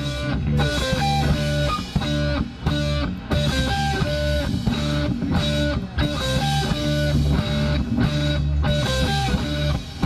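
Live rock band playing, led by electric guitars over bass and drums, with held melody notes.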